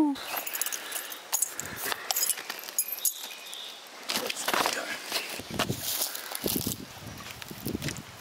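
Irregular clicks and rustles of handling, with faint voice sounds mixed in.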